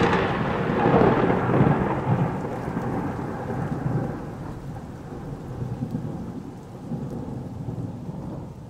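Rolling thunder with rain, slowly dying away with a few swells of rumble.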